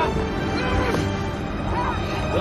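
Dramatic film score with strained human cries and yells over it, short wavering calls near the start, in the middle and just before the end.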